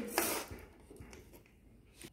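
A brief soft rustle in the first half-second, then near silence with only room tone and a faint tick or two.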